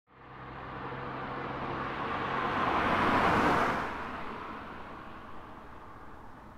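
A car passing by over a background of distant traffic, growing louder to its peak about three seconds in and then fading away.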